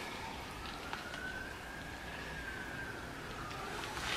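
A faint distant siren: one slow rise and fall in pitch over a few seconds, above low hiss, with a light click about a second in.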